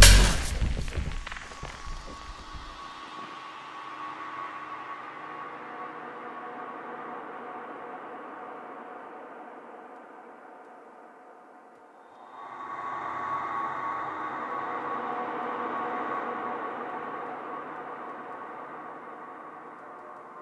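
Drum and bass mix drops out, its last beats echoing away over the first couple of seconds, leaving a quiet ambient synth pad of held tones. The pad fades, then swells back in about twelve seconds in.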